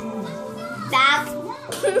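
Background music playing steadily, with a short high-pitched voice exclamation about a second in and a snatch of speech near the end.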